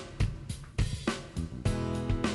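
Intro music with a driving drum-kit beat of kick, snare and hi-hat, hitting about three to four times a second; sustained pitched chords come in near the end.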